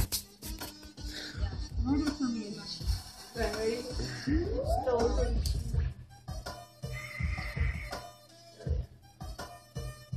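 Voices talking over background music, with low bumps scattered through.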